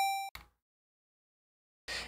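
Tail of a chiptune blip from the Sytrus synth in FL Studio: a square-wave note holds on the top step of its stairs pitch envelope and fades out within the first third of a second, followed by a faint click.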